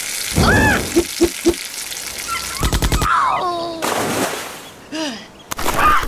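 Cartoon sound effects of water splashing and churning, with short wordless vocal cries that glide up and down and a quick run of clicks midway.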